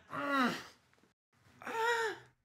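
A man moaning in pain twice, each moan short, the second one higher-pitched than the first.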